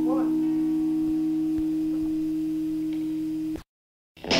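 Distorted electric guitar feedback holding one steady tone as a punk song ends, fading slowly. It cuts off suddenly about three and a half seconds in, leaving a moment of silence.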